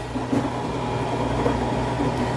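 Steady running hum of a front-loading washing machine turning its drum during the wash, mixed with the cooling fan of the 12 V JINSI 3000 W inverter that is powering it, the fan switched on under the load.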